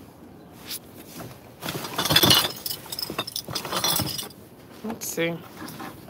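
Black plastic garbage bags being rustled and shifted inside a plastic wheeled trash cart. A burst of crinkling and knocking starts about one and a half seconds in and lasts a couple of seconds.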